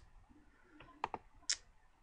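Faint computer mouse clicks: a few short separate clicks about a second in, the last one sharper.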